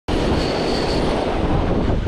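Spinning reel's drag paying out line under the pull of a hooked sea bass: a loud, steady, rapid clicking buzz.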